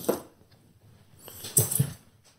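Polystyrene foam cooler lid rubbing against the box as it is handled and lowered, giving a short squeak and scrape near the end.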